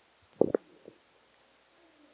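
Brief handling noise from a handheld microphone as it is lifted off its stand: a short thump and rub about half a second in, then a faint knock.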